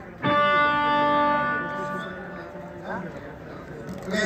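A guitar chord struck once about a quarter second in and left ringing, fading out over about two seconds.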